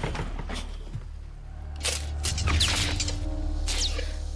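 Sombre film underscore: a deep sustained drone with long held notes coming in about halfway, with a few short, sharp sound effects over it.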